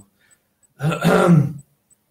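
A man clearing his throat once, a short rough sound about a second in.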